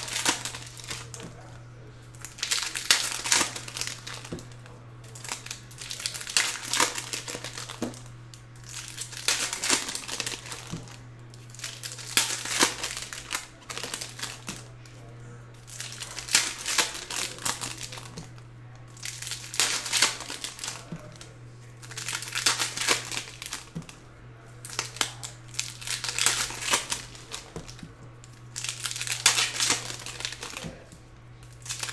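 Trading-card pack wrappers crinkling and tearing as packs are opened and handled, in repeated bursts every second or two, over a steady low hum.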